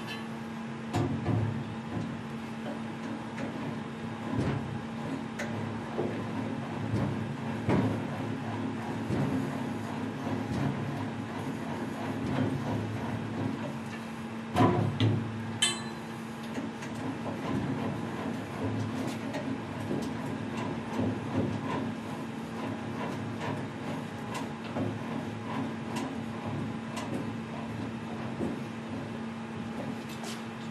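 An alloy wheel being fitted and clamped into a wheel holder: scattered metal knocks, clicks and scrapes, a few louder knocks among them, over a steady hum.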